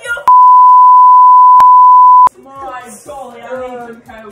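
A single loud, steady, high-pitched bleep tone about two seconds long, cutting in and out abruptly: an edited-in censor bleep over a spoken word. Speech follows it.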